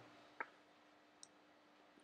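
Near silence, broken by one short click about half a second in and a faint high tick about a second later, typical of computer input clicks at a desk.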